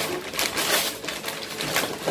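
Wrapping paper being ripped and crumpled off a gift box by hand, with a longer rip about half a second in and another shorter one near the end.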